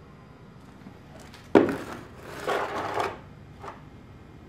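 Homemade wooden cider press being handled and shifted: a sharp wooden knock about one and a half seconds in, then about a second of scraping and rubbing, and a small click near the end.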